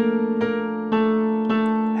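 Keyboard with a piano sound playing a B♭ chord opened out into octaves: three strikes in the first second, then the chord held.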